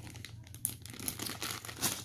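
A plastic packaging bag full of plastic planner binding discs crinkling as it is handled, with irregular crackles.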